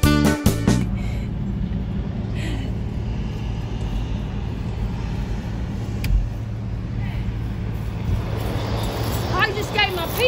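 Background music that cuts off about a second in, followed by a steady low rumble of road traffic and car engines. A single sharp click comes near the middle, and a woman starts talking near the end.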